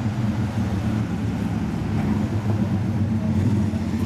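Lamborghini Aventador SV's V12 idling steadily with a deep, even note.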